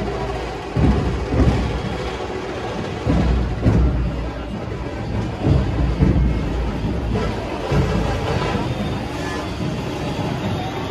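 Large dhol drums of a dhol-tasha troupe beating in a street procession, deep booms at irregular intervals over the noise of the crowd.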